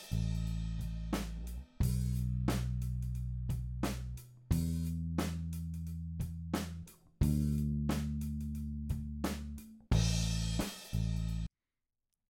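A recorded drum kit (kick, snare and overhead cymbals) played back with a bass line of long ringing notes, a new note about every two and a half seconds. The drum hits are quantized tight to the grid by Beat Detective. Playback stops abruptly shortly before the end, and the added silence lends a little drag at the end of the four-bar loop.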